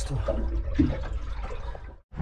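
Water lapping against the boat's hull, heard from inside a compartment low in the bow, a low even wash that fades away near the end.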